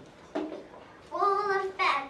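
A child's voice singing: a short syllable, then a held, steady note from about a second in, and another syllable at the end.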